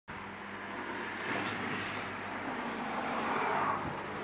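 Steady machinery noise of a self-service car wash bay, with a low, even hum.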